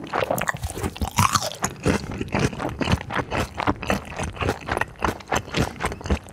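Close-miked chewing of fried food: a dense, irregular run of crunches from the mouth.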